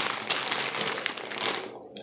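Plastic bag of Charms Mini Pops lollipops crinkling as it is handled, a dense run of rustles and crackles that stops a little before the end.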